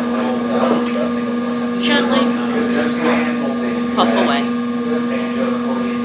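A steady low hum throughout, over which a meerschaum tobacco pipe is drawn on: a few short, soft puffs and lip sounds about two seconds apart.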